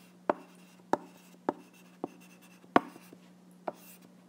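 Handwriting on an iPad touchscreen: about six sharp, irregular taps and clicks of the writing tip striking the glass as a word and a line are written, over a faint steady hum.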